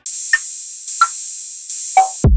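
Electronic channel-ident music: a steady high hissing synth texture with three short blips, each lower in pitch than the last, spaced a little under a second apart.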